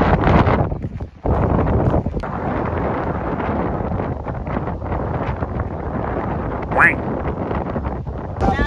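Fierce wind buffeting the microphone: a steady rushing noise, gusty in the first second, with a brief drop about a second in. Near the end there is one short rising squeak.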